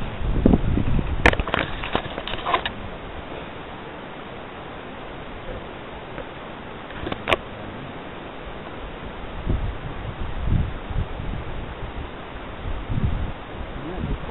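Wind buffeting a handheld camcorder's microphone in irregular low gusts over a steady hiss, with a cluster of sharp clicks a little over a second in and a single click about seven seconds in.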